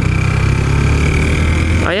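Motorcycle engine running steadily under way, with a thin steady high whine over it.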